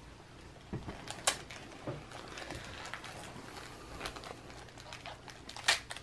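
Small gift in plastic packaging being handled and picked open by hand: scattered soft clicks and crinkles.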